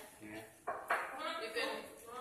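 People talking in a small group, with no words made out.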